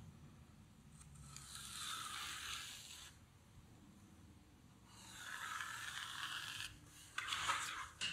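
Pencil drawn along the edge of a short MDF spacer strip on a painted wall: a faint scratchy scrape in two strokes of about two seconds each, with a few short knocks of the strip near the end.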